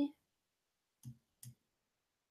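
Two faint, short clicks from working a computer's mouse or keyboard, about a third of a second apart.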